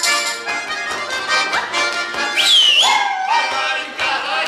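Accordion playing a lively folk dance tune, with a high voice sliding up into a held, wavering whoop about halfway through.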